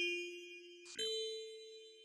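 Two bell-like struck notes about a second apart, the second a little higher, each ringing out and slowly fading: the closing notes of an electronic song's outro.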